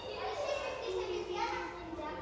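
Children's voices talking and calling out, indistinct, with no clear words.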